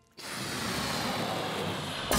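Steady rushing, jet-like whoosh sound effect that cuts in abruptly just after the start: the transition sting under the show's logo animation.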